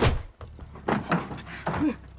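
Film fight sound effects: a heavy thud of a blow right at the start, then a few lighter knocks and a short grunt near the end.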